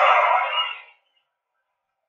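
Arena crowd cheering on a television broadcast, fading out within the first second and then cutting to dead silence.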